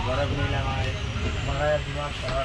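Passenger train running slowly, heard from inside the carriage by an open window: a steady low rumble with indistinct voices over it.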